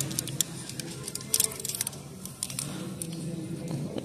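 Plastic clothes hangers clicking against each other and the rack, with fabric rustling, as garments are handled and pulled from a clothing rack. A low murmur of store background sound runs underneath.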